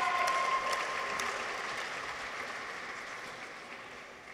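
Audience clapping for a graduate whose name has just been called, loudest at the start and fading away steadily.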